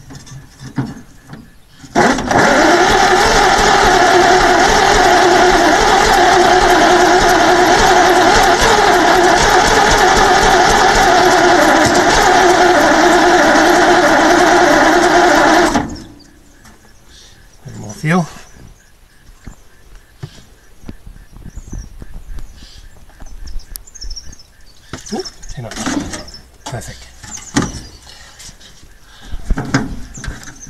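1948 Bedford six-cylinder truck's starter motor, worked by hand because the dash pull-start lever won't engage it properly, cranking the engine with a loud steady whine. It starts about two seconds in, runs for about fourteen seconds and cuts off suddenly. Quieter clicks and knocks follow.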